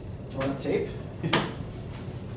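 Two short, sharp clicks about a second apart, with a faint murmur of voices between them.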